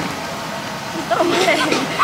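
Busy food-stall background: a steady noise bed, then people talking from about a second in.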